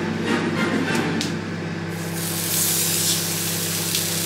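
A raw salmon steak is laid into hot oil in a non-stick frying pan and sizzles loudly from about halfway through, a steady bright hiss. Before that the oil sizzles more faintly under background music.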